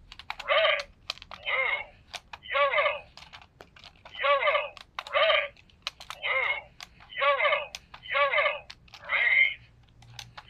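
Electronic memory game toy giving a short, pitched, voice-like electronic sound about once a second, with sharp clicks of buttons being pressed between the sounds.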